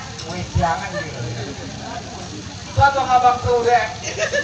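Performers' voices through a stage public-address system, loudest and most drawn-out about three seconds in, with a few short low thumps underneath.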